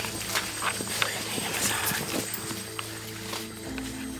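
Footsteps and rustling through forest undergrowth and leaf litter, irregular close crackles and snaps, over steady background music.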